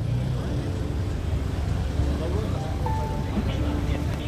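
Busy town street ambience: a steady low rumble of car traffic under the chatter of people's voices, with a few short held tones near the middle.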